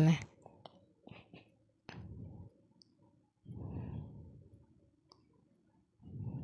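A few faint clicks and light ticks of a steel spoon in a small steel bowl of face-pack paste, with a stretch of muffled low sound about midway.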